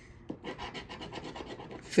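A round handheld scratcher tool scraping the coating off a paper scratch-off lottery ticket in quick, even back-and-forth strokes.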